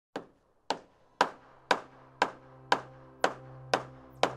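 Channel intro sound: a run of sharp, evenly spaced knocks, about two a second and eight in all, over a low steady tone that comes in after about a second.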